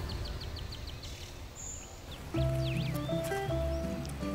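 Small birds chirping, a quick run of about ten short high chirps followed by a few gliding calls. About two seconds in, soft background music enters with held notes over a bass line.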